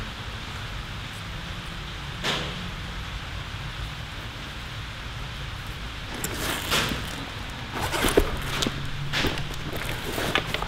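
A Veto Pro Pac MB2 tool bag being handled: one knock about two seconds in, then rustling and a run of sharp knocks from about six seconds on as the bag and its tools are moved, over a steady background hiss and hum.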